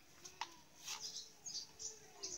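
Faint bird chirping: a few short, high chirps in quick succession about halfway through, after a couple of light clicks.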